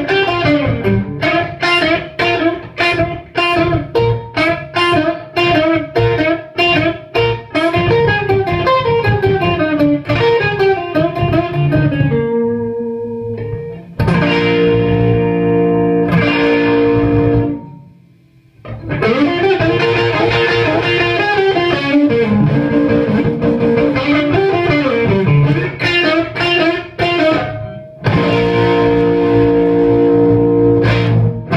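Les Paul-style electric guitar on its BR-PAF neck pickup, played through a Marshall amp stack. Quick picked single-note runs climb and fall, broken by held chords, with a short pause a little past halfway.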